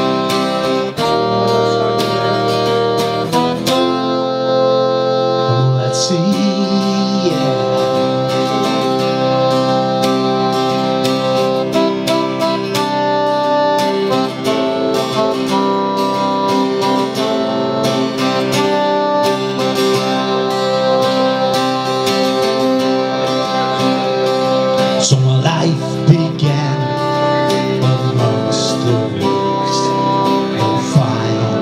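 Live acoustic guitar and Roland electronic keyboard playing a folk song together, the guitar strummed and picked over long held keyboard chords that change every second or two.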